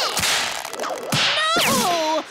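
Cartoon whoosh sound effects: a noisy swish in the first second, then a second swish about one and a half seconds in, carrying falling tones.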